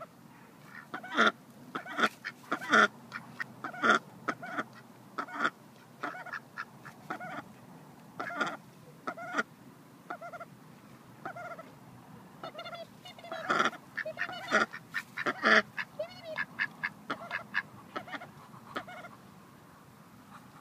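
Domestic duck quacking over and over in short calls that come in runs, loudest in the first few seconds and again about two-thirds of the way through.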